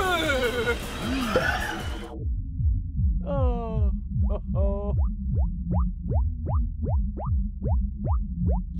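Electronic dance music from the party outside, with a steady thumping bass beat of about three beats a second. After the first two seconds it is muffled, with little but the bass coming through. A character's strained vocal noises sit over it at the start, and later a run of short rising electronic blips.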